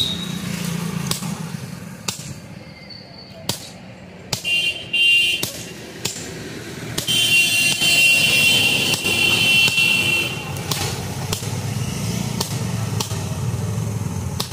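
Hammer blows, irregular and roughly a second apart, on a handled punch being driven into a red-hot axe head on an anvil to open the handle eye. A high tone, like a horn, sounds for a few seconds just past the middle, over a low steady rumble.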